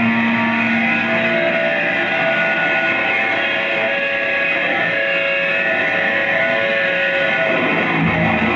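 Live punk band's electric guitars ringing out long held notes, loud and steady, with the bass coming back in near the end.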